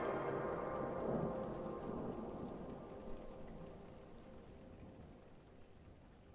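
The ringing tail of a loud orchestral chord from a film score, its held notes and reverberation dying away slowly toward near silence.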